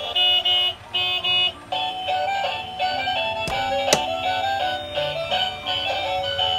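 A battery-powered toy gear light bus playing its built-in electronic tune, a simple melody of steady beeping notes. Two sharp clicks come near the middle as the plastic toy is handled.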